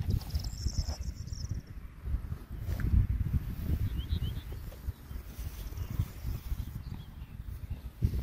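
Wind buffeting the microphone in an open grass field as a gusty, uneven rumble. A high insect buzz sounds from about half a second in for about a second, and a few short, faint chirps come about four seconds in.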